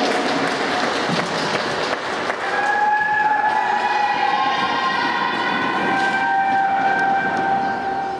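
Applause from the rink's spectators, then from about two and a half seconds in a held musical chord over the arena speakers, with its notes changing near the end.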